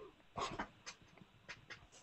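Faint, breathy stifled laughter: a short puff of snickering about half a second in, then a few small clicks and breaths.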